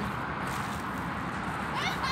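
A short, rising animal call near the end, over a steady outdoor background hiss.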